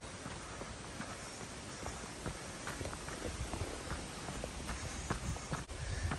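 Steady footsteps of a hiker in trail running shoes on a rocky, rooty dirt trail: a run of light, irregular steps over a low background hiss.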